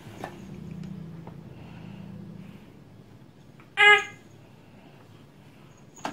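A baby's single short, high-pitched squeal, the loudest sound here, just under four seconds in, over a faint low hum.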